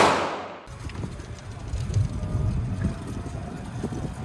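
A music track's last sound fades out in the first half-second, then a steady low rumble of a golf cart driving, with wind on the microphone.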